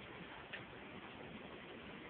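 A few faint clicks, like a dog's claws on a hard floor, over a steady low background noise.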